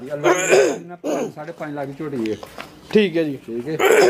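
Men talking, with a rough, noisy burst a moment in and another near the end.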